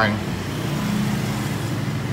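Steady low hum of street traffic, with a vehicle engine running close by.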